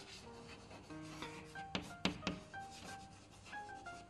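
Chalk writing on a blackboard: faint scratching strokes with a few sharp taps as the chalk meets the board, over faint background music.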